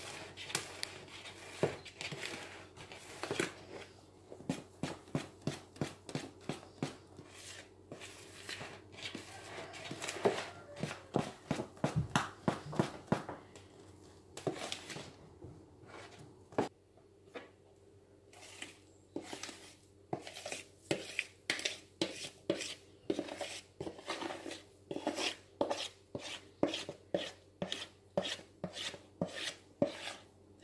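A spoon stirring thick cake batter by hand in a glass bowl, scraping and knocking against the bowl at about two strokes a second, with a quieter stretch midway.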